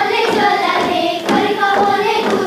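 A group of girls singing a Hungarian folk song together, with a single thump about a second in.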